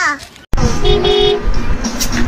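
A child's voice trailing off in a falling glide, then after a sudden break a car horn honking amid traffic noise from a television.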